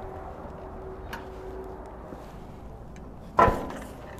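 Low steady background hum, then a single sharp clunk about three and a half seconds in as the CNG dispenser's fuel nozzle is taken off its holder.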